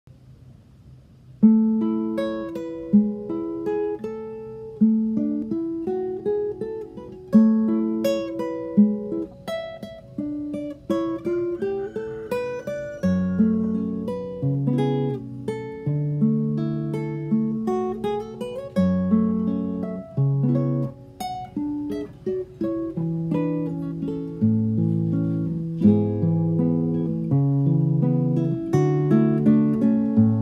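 Solo classical guitar with a capo, plucked in arpeggiated chords with a melody on top, starting about a second and a half in. Deeper bass notes join about halfway through.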